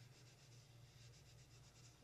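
Faint rubbing of a small cloth dampened with rubbing alcohol, wiped in short back-and-forth strokes over the holographic paper frame of a card to lift off dried glue.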